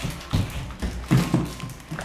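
Footsteps on a hard floor: a run of uneven, quick thudding steps.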